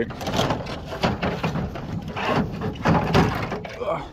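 A yellow Mr. LongArm extension pole scraping and knocking as it is slid out of a pickup truck's ladder rack, rubbing along the fiberglass ladder with a run of clatter and bumps.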